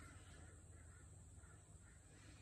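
Near silence: room tone with a steady faint hum and a few faint, short sounds, too quiet to name.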